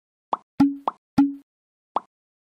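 Five short cartoon-style pop sound effects of the kind laid under animated graphics appearing on screen. Four come in quick succession, about a quarter second apart, and the last comes near the end. Two of them trail a brief low hum, like a 'bloop'.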